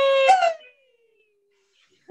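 A woman's voice holding a high, howl-like "woo" for about a second, then breaking and sliding down in pitch as it fades. After that it goes silent.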